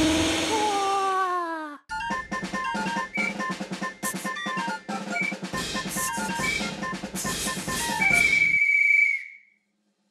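A voice making a gliding 'vrrrr' engine noise, which falls in pitch and cuts off abruptly about two seconds in. Then a short jingle plays: drums under quick bell-like notes, ending on one held high note that fades away.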